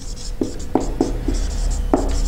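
Felt-tip marker writing on a whiteboard: short scratchy strokes with several light taps of the tip against the board.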